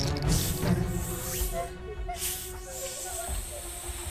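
A snake hissing in long drawn-out hisses, broken by a short pause about two seconds in, over background music holding a steady note.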